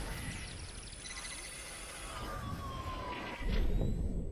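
Electronic logo-intro sound effects: sweeping synthesized tones that slowly fall in pitch over a noisy whoosh. A low hit lands about three and a half seconds in.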